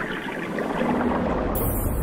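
Underwater ambience in a cartoon soundtrack: a steady, low rumbling wash of noise, with a faint low tone partway through.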